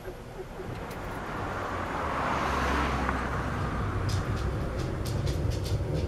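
A car approaching along the street, its sound building over the first few seconds into a steady low rumble. From about four seconds in, a run of sharp clicks comes over the rumble.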